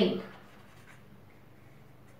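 Faint scratching of a pen writing a word on paper.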